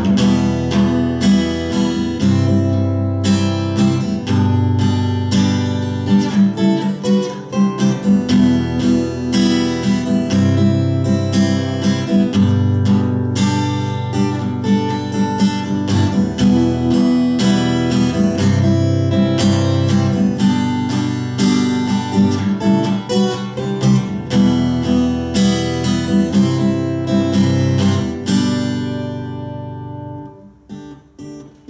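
Acoustic guitar strummed steadily in an instrumental passage of a song, a dense even rhythm of strokes over ringing chords, getting quieter near the end.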